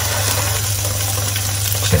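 Eggs and diced vegetables sizzling steadily in hot pans, over a steady low hum.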